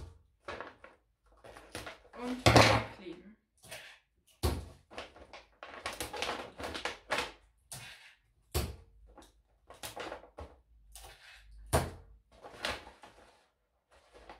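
Glossy gift-wrapping paper crinkling and rustling in irregular bursts as it is folded and gathered around a long cylindrical package, the loudest crumple about two and a half seconds in. A few sharp knocks on the wooden table are mixed in.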